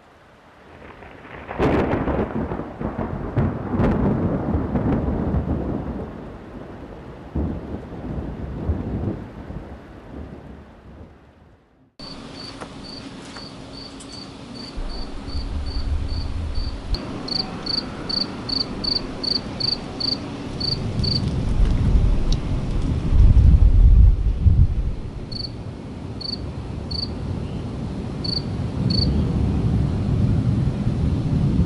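Thunderstorm: a loud thunderclap about two seconds in that rolls off into a long rumble, then steady rain with further rolls of thunder, the loudest a few seconds before the end. Over the rain, a high chirping repeats in a steady series, about two chirps a second.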